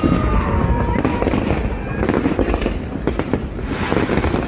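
Fireworks going off in quick succession: a dense, continuous barrage of bangs and crackles, loud throughout.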